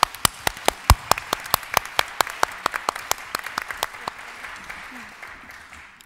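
Audience applauding, with sharp single claps close to the microphone standing out over the crowd's clapping, thinning out and fading near the end.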